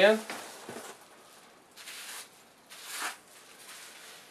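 Rustling and crinkling of packing wrap as a wrapped beer bottle is pulled out of a shipping box, in two brief surges about two and three seconds in.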